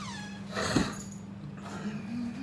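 A pet's short high cry that falls in pitch, then a brief rustling burst with a sharp thump just under a second in.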